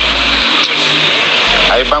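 Loud, steady rushing noise behind a recorded voice. A man starts speaking about a second and a half in.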